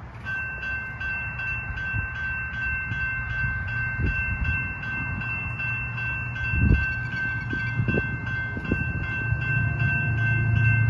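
Electronic level-crossing bells start ringing just after the start and keep up a steady, rapid, high-pitched ring as the red crossing lights flash. A low hum comes in near the end, as the boom gates begin to lower, with a few low thumps earlier on.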